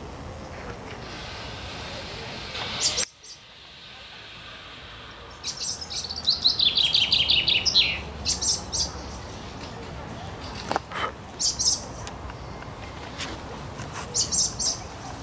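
Songbird singing in the treetops: a loud song about six seconds in, a quick run of notes stepping down in pitch, with shorter high chirps before and after it.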